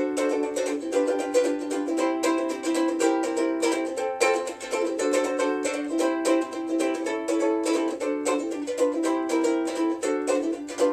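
Soprano ukulele of plain meranti wood being played, a steady run of quick strummed and picked chords and notes.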